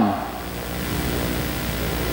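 Steady background hum and hiss of the room, with faint low steady tones beneath it. The tail of a spoken word fades out at the start.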